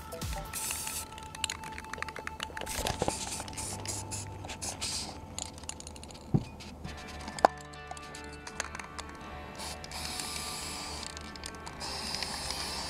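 Aerosol spray-paint cans hissing in short bursts as paint is sprayed onto a board, over background music. Two sharp clicks stand out, about six and seven seconds in.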